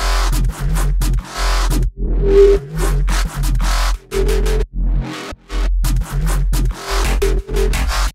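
Electronic bass track playing in short, heavy sub-bass phrases with brief gaps between them. Partway through, an EQ band around 400 Hz is first boosted and then deeply cut, taking out a harsh range in the bass.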